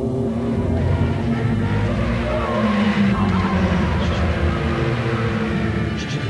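A dense, steady low rumbling drone with slowly shifting, gliding tones layered on top, the experimental soundtrack of the film, with an engine-like quality.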